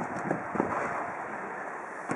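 Wind rumbling on the camera's microphone on an open-air futsal court, with a few faint taps of the ball and players' shoes on artificial turf.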